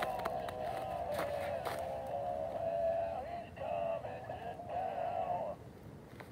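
Electronic Santa toy's song playing through its small speaker while the toy burns, a thin wavering tune with sharp clicks over it, cutting off about five and a half seconds in.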